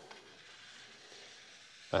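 Near silence: faint, even room tone.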